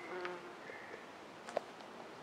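A flying insect buzzing briefly close by near the start, then a single sharp snap about one and a half seconds in, over quiet forest ambience.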